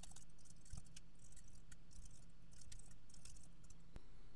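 Computer keyboard typing: quick, irregular, light key clicks over a steady low hum.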